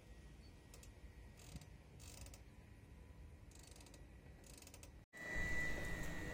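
Quiet marina background: a low steady rumble with a few faint clicks and creaks from the rigging and fittings of moored sailboats. About five seconds in it cuts to a louder outdoor background.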